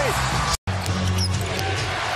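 Basketball arena game sound: a ball bouncing on the hardwood court under a steady low music tone. The sound cuts out completely for an instant about half a second in.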